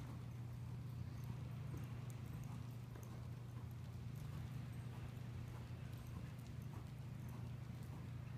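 A horse's faint hoofbeats as it trots under a rider on soft arena dirt, over a steady low hum.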